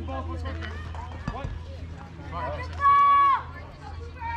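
Spectators talking at a youth baseball game. About three seconds in, one voice lets out a loud, drawn-out call that holds one pitch for about half a second and then drops off. A low steady hum runs underneath.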